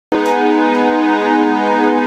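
Synthesizer holding one steady sustained chord, cutting in abruptly at the very start.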